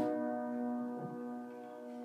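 Upright piano's final chord ringing and slowly dying away, with a soft touch about a second in.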